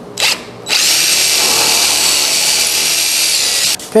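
Cordless DeWalt drill with a larger bit: a short blip, then about three seconds of steady running as it bores into the end of a wooden board, widening the screw hole so the screw's shank will fit. It cuts off just before the end.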